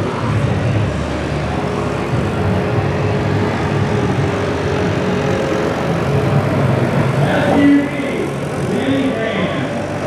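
Vehicle engines running steadily with a low rumble, with people's voices heard over them, most clearly in the last few seconds.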